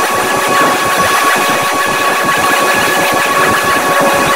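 Digitally distorted, effects-processed audio: a loud, dense crackling noise with a steady high tone held in it.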